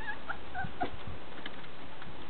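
A few short, high whimpering squeaks from a young Shetland sheepdog puppy in the first second, with a few soft knocks.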